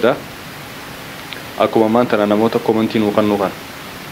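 A man speaking one phrase into a close microphone over a steady background hiss, starting about one and a half seconds in and lasting about two seconds.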